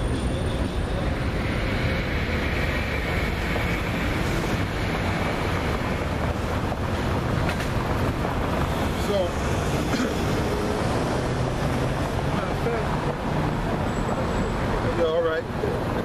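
Steady outdoor street noise: road traffic and wind buffeting the microphone, holding at an even level.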